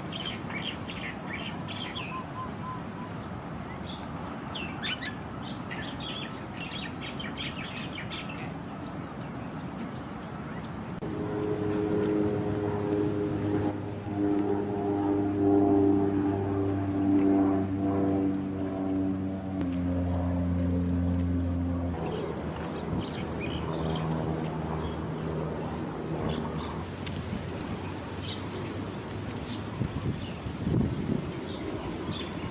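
Small birds chirping over steady outdoor background noise for the first eight seconds or so. From about eleven seconds in, a louder low droning hum made of several steady tones takes over, shifting in pitch twice before fading back at about twenty-two seconds, with fainter tones lingering a few seconds more.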